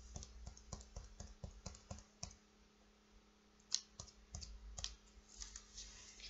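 Faint quick taps of a cotton swab dabbing paint dots onto paper, a few a second. The tapping pauses for about a second and a half midway, then a sharper click, then more taps.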